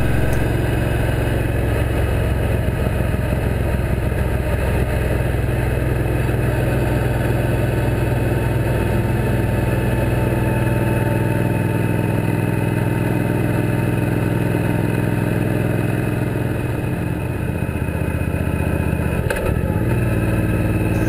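Suzuki Boulevard C90T cruiser's V-twin engine running steadily at highway cruising speed, heard with wind and road noise from a bike-mounted camera. The engine note eases briefly a little after three-quarters of the way through.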